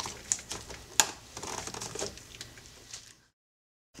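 Light clicks and rubbing of a clamp and an intake tube being worked free by gloved hands, the sharpest click about a second in. The sound cuts to dead silence just after three seconds in.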